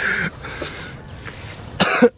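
A man laughing breathily and clearing his throat with a cough, with a sharp burst of it near the end.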